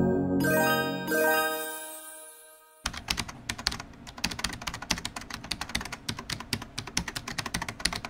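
A short chiming jingle fading out over the first two seconds or so. Then, about three seconds in, a quick, uneven run of keyboard-typing clicks starts, a typing sound effect for text being typed out on screen.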